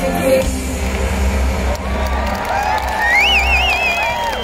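A live pop band's song ending over a festival PA while a large outdoor crowd cheers and whoops. Near the end a high, wavering voice rises over a held note.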